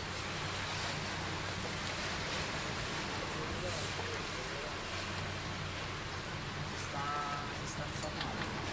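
Steady low machinery hum under a haze of noise, with indistinct distant voices and a brief pitched call about seven seconds in.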